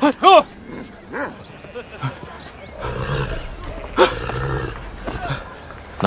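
Dogs barking and growling: a short sharp bark right at the start and another about a second in, then a low rumbling growl through the middle.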